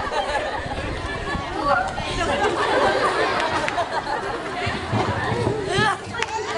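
Indistinct, overlapping voices talking, with a brief rising tone near the end.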